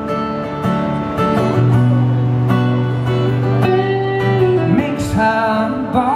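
Live band music: a strummed acoustic guitar under a male voice singing a slow ballad, with held notes.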